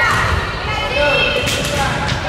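High-pitched voices of girls calling out in a gymnasium, with a single sharp knock about one and a half seconds in.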